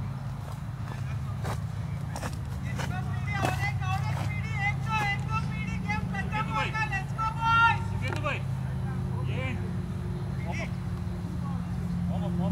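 Players' voices calling out across a cricket field, loudest in the middle of the stretch, with a few sharp knocks early on, over a steady low hum.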